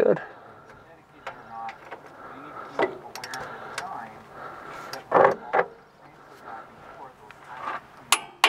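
Half-inch torque wrench and socket on U-bolt nuts: scattered clicks and knocks of the tool, the loudest two close together about five seconds in.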